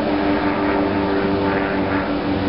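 Steady hum of many honeybees buzzing, massed at the entrance of their hive.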